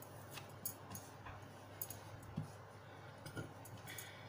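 Tarot cards being handled: faint, scattered clicks and slides as cards are drawn from the deck and one is laid down on the table.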